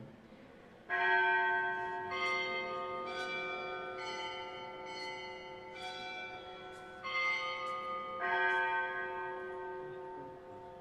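A bell struck repeatedly, about once a second, each stroke ringing on and overlapping the next. These are the consecration bells marking the elevation of the chalice at Mass.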